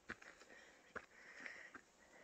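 Faint footsteps on a rocky trail, three in about two seconds, with soft breathing close to the microphone between them.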